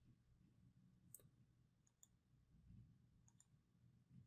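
Near silence with a few faint computer-mouse clicks, the first about a second in and the rest spread through the last couple of seconds.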